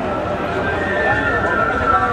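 A stallion neighing: a wavering call starting about half a second in and lasting about a second, over the chatter of a crowd.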